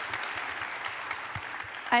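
Audience applauding steadily: many hands clapping together.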